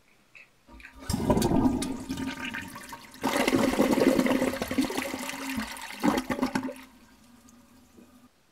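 Water rushing loudly for about six seconds, starting about a second in, with a steady low hum under it that lingers as the rush dies away near the end.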